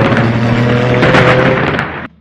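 Loud thunder-like rumble over a steady low drone, ending abruptly as the intro gives way to music.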